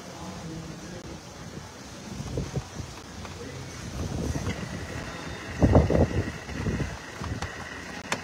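Wind buffeting the microphone, an uneven low rumble that swells into a strong gust about six seconds in, with faint voices behind it.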